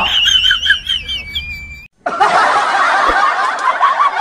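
High-pitched giggling laughter, cut off abruptly a little under two seconds in. After a brief silence, busy background music starts.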